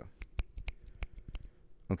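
A quick run of about ten finger snaps over a second and a half, given as snapping applause for a right answer.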